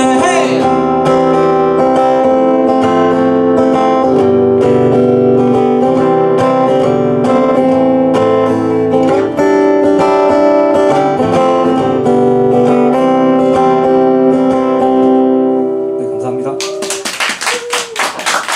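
Acoustic guitar strumming the closing chords of a song, just after a last sung note fades at the start. The guitar rings out about sixteen seconds in, and clapping starts near the end.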